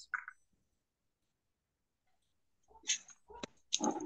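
Dead silence on a video call for about two and a half seconds, then a person's voice coming in faintly over the call near the end.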